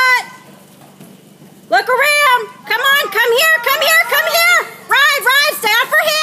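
High-pitched voices shouting and cheering in repeated, drawn-out calls, starting a little under two seconds in after a quieter moment: spectators urging on a horse and rider during a barrel run.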